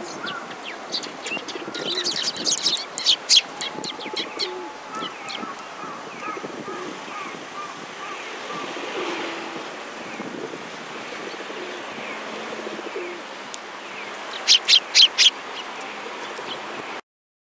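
Eurasian tree sparrows chirping in short sharp notes, a cluster about two to three seconds in and five quick loud chirps near the end, with a pigeon cooing low in the background.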